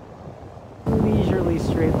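Faint surf hiss, then about a second in a sudden loud rush of wind buffeting the microphone, with a man's voice coming in near the end.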